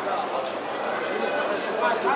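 Indistinct chatter of many people talking at once, a steady background babble of a crowd.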